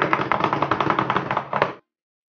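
A drum roll: a fast, even run of taps that cuts off suddenly near the end.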